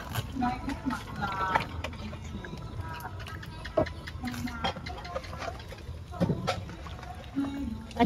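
A metal ladle gives scattered light clinks and scrapes against an aluminium pan of fish cooking in hot water on a portable gas stove. A low steady rumble runs under it, and quiet voices can be heard in the background.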